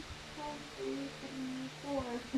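A person humming a short run of held notes, softly.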